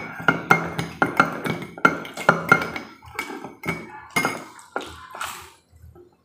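A metal spoon clinking against the inside of a ceramic cup while stirring, about four clinks a second, then slower and fainter clinks that stop about five seconds in.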